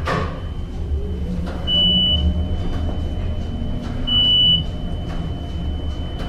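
Traction elevator car travelling down with a low running rumble, a short high beep sounding as it passes each floor: three beeps about two seconds apart, over a faint steady high tone.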